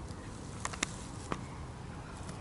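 A bass being let go by hand at the water's edge: faint water sounds with a few small clicks over a steady low hiss.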